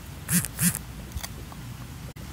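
A pig grunting twice in quick succession, two short calls about a third of a second apart, while it eats from a hand.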